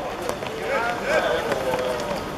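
Players' shouted calls during a football match: a few short rising-and-falling shouts, then one longer drawn-out call near the end, over steady background noise.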